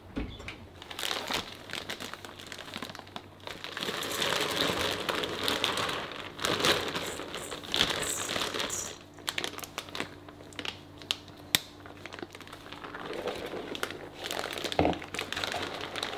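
Plastic bag crinkling as dry brown-rice koji is tipped out of it into a stainless steel bowl, with a run of small clicks and rustles that is loudest in the middle.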